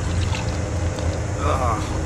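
Steady low rumble of outdoor background noise, with a brief voice about one and a half seconds in.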